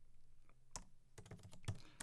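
Computer keyboard typing, faint: a short run of about six to eight keystrokes, most of them close together in the second half.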